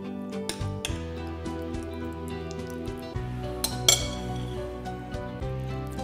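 A metal spoon clinking a few times against a metal ring mold as tuna mixture is pressed down inside it, the sharpest ringing clink about four seconds in, over soft background music.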